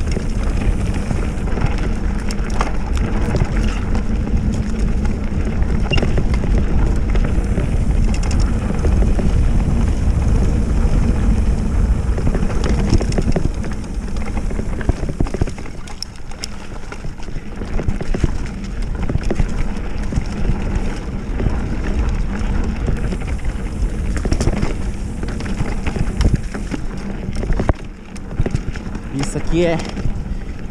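Oggi Cattura Pro mountain bike ridden fast down a bumpy dirt single track: wind buffeting the microphone, with tyres rolling over dirt and the bike's parts rattling in many short clicks and knocks. It eases off briefly about halfway through and again near the end.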